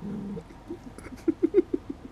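Poodle playing rough: a short low growl at the start, then a quick run of short, sharp growls or squeaks with clicks about a second in.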